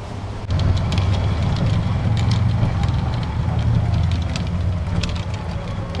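Golf cart driving along, with a steady low running hum and scattered light clicks and rattles.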